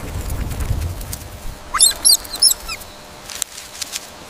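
Small rodent-like mammals squeaking: a low rumble in the first second, then a quick run of high, chirping squeaks around the middle, followed by a couple of faint clicks.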